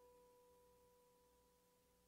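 A single faint plucked guitar note, ringing on and slowly fading away.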